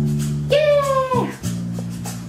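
Sustained organ-style chords played on GarageBand on an iPad 2. A higher note slides in over them about half a second in and bends down in pitch as it ends.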